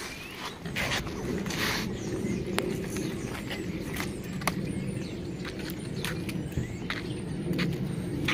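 Fishing gear being handled: scattered clicks and knocks with a brief rustle about two seconds in, as a bag, a plastic tackle box and a hand scale are picked through, over a steady low rumble.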